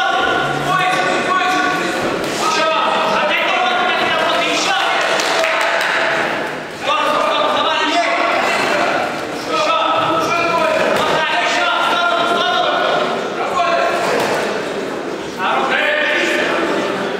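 Spectators shouting at the boxers in a large, echoing hall, one long drawn-out call after another, with a few thuds among them.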